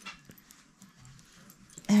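Faint rustling and brushing of a knitted yarn hat being pulled down over a head, with a few small soft clicks. A spoken "uh" comes in right at the end.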